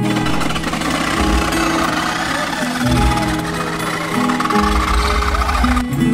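Acoustic guitar background music playing under a loud, noisy background with people's voices in it; the noise stops just before the end.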